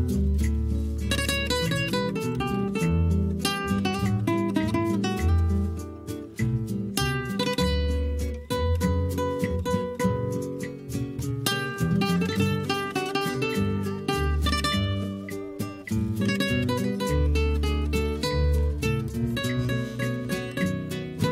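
Two nylon-string acoustic guitars playing together: a plucked melody over regular deep bass notes, steady throughout.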